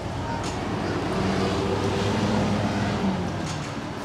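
A motor vehicle's engine running close by on a busy street, swelling to its loudest a couple of seconds in and easing off again, over the murmur of a pedestrian crowd.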